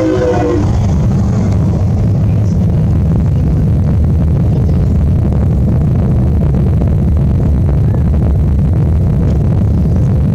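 Deep, steady rumble of Starship SN10's Raptor rocket engines, heard from several kilometres away.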